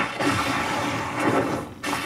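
Sound effects from an anime episode's soundtrack: a steady rushing noise that drops out briefly near the end.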